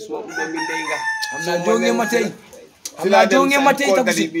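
A rooster crows once, a long call of about two seconds, over men's voices talking; the talk carries on after the crow.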